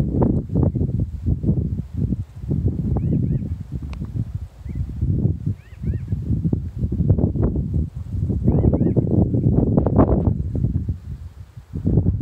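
Wind buffeting the microphone in uneven gusts, with a bird chirping faintly a few times.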